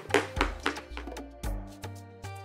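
Background music with a steady beat. Over it, in the first second or so, rapid knocks of a wooden pestle pounding garlic and shrimp paste in a plastic bowl.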